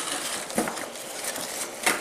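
Cardboard shipping box being pulled open by hand: flaps scraping and rustling against each other, with a sharp knock near the end.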